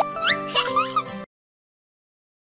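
End of a cartoon channel's intro jingle: bright music with a few quick rising, cartoonish pitch glides, cutting off to dead silence just over a second in.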